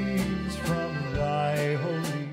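A live polka band playing: accordion chords over bass and a drum kit, with a steady beat.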